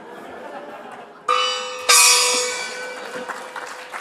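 A bell is struck twice, the second strike louder, and rings out slowly: the time-up signal ending a lightning talk.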